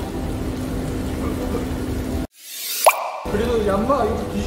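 Steady restaurant background noise that cuts out suddenly a little past two seconds in, followed by a short, sharp rising 'plop' sound effect added in editing, after which the background returns.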